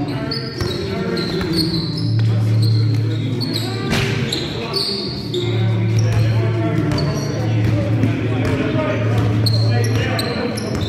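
Basketball game on a wooden gym floor: sneakers squeaking, a ball bouncing, and players' voices echoing in a large hall. A low hum comes and goes.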